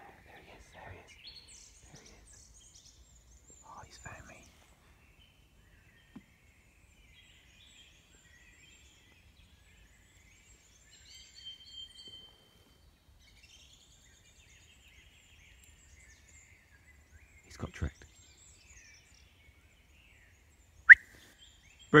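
Woodland birds chirping and singing faintly, with a short clear whistled note about halfway through, and a few soft rustles of nearby movement. A man's loud shout comes at the very end.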